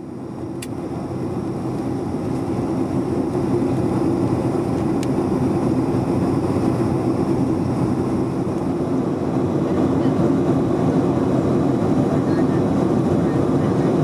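Steady drone of an airliner cabin in flight: engine and air noise, mostly low in pitch, fading in over the first couple of seconds and then holding level, with a couple of faint clicks.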